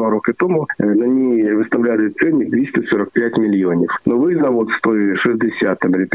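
A man speaking over a telephone line, his voice thin and cut off in the highs.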